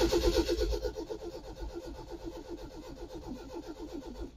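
Starter motor cranking the 1972 Lotus Europa Twin Cam's four-cylinder engine with choke fully out, in a fast, even rhythm of compression pulses that gradually grows quieter; the engine never fires. It is not getting fuel, which the owner thinks could be rust from the tank in the fuel line.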